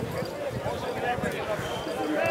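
Several people chatting in the background, with a few short, low knocks.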